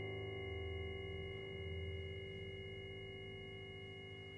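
A piano chord ringing on after being struck and slowly dying away: a cluster of steady sustained tones, with slow swells in the bass. The piano is tuned microtonally in just intonation.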